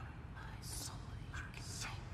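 Faint whispered words with sharp hissing s-sounds, over a low steady hum.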